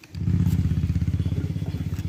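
A low, fast-pulsing buzz like a small engine running, starting abruptly just after the start.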